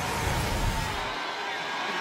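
TV broadcast logo-wipe sound effect: a whoosh with a low boom that fades after about a second, over steady background noise.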